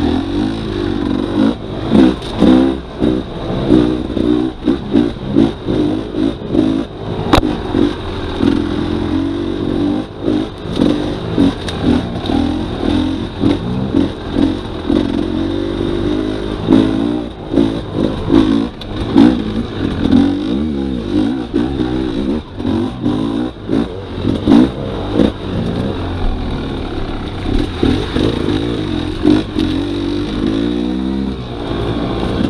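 Dirt bike engine pulling at low speed, the throttle opening and closing again and again so the engine note keeps rising and falling.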